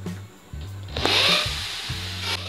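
Handheld power tool starting about a second in and working into a concrete wall with a loud hissing, grinding noise, over background music with a steady bass beat.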